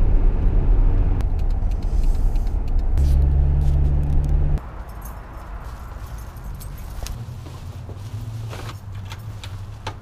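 Toyota Camry sedan driving, heard from inside the cabin as a loud, steady low rumble of engine and road noise. It cuts off suddenly about halfway through, leaving a quieter stretch with scattered clicks, knocks and rustling as shopping bags and keys are carried.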